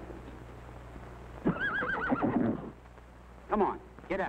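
Harness horse of a milk wagon whinnying: one long, quavering neigh that starts about a second and a half in and lasts about a second, followed by a shorter call near the end. The horse is acting up, balking at a stop on its milk route.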